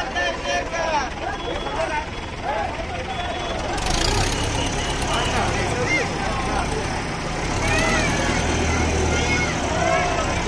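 Crowd voices calling out over a heavy lifting vehicle's engine, which comes up to a steady low drone about four seconds in as the machine carrying the idol works.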